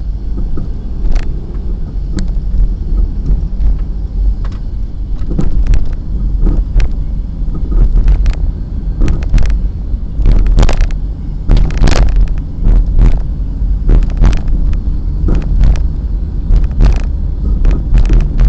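Car driving at night, heard from inside the cabin: a loud, steady low road rumble with frequent irregular knocks and clicks.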